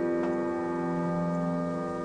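Sustained keyboard chord from a recorded song ringing out and slowly fading, with a faint note struck about a quarter of a second in; no singing.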